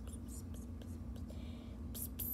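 A girl whispering softly under her breath: a string of short hissy sounds, over a steady low hum.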